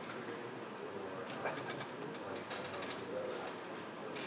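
Faint, distant voice of an audience member speaking off-microphone, muffled by the hall, with a run of light clicks about halfway through.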